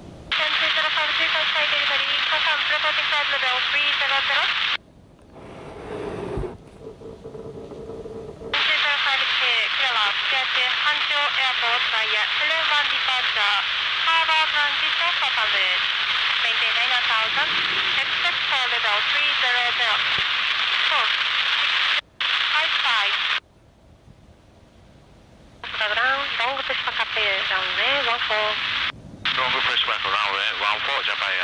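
Air traffic control radio traffic: narrow-band, tinny voice transmissions that key on and off abruptly, several separate calls with short breaks between them.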